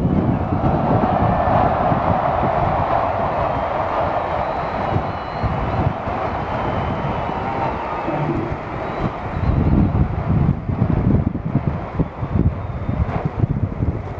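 Large stadium crowd cheering as a steady roar, strongest in the first half. From about two thirds of the way in, wind buffets the microphone with gusty rumbling.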